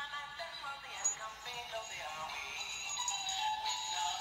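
A song with a sung voice playing from an animated plush reindeer toy.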